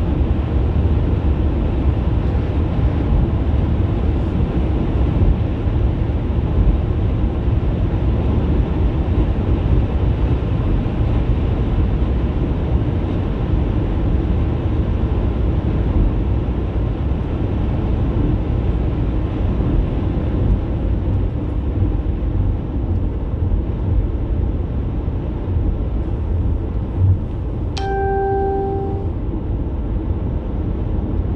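Steady road and engine noise heard inside a car's cabin at motorway speed. Near the end, a click and then a short electronic beep of about a second.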